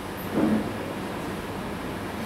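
Steady hiss of room noise through the sound system. A brief, short sound about half a second in may be a breath or a small vocal sound.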